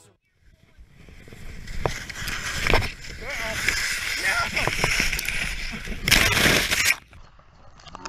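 A skier's crash in snow: skis and body scraping and tumbling through the snow, with a few short cries. A loud rush of noise about six seconds in cuts off about a second later.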